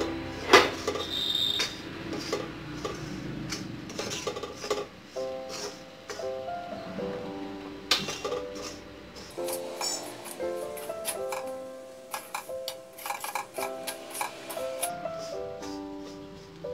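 Spatula scraping and clinking against an iron kadhai as dry-roasting semolina is stirred continuously, in short irregular strokes. Background piano music comes in about five seconds in and runs under the scraping.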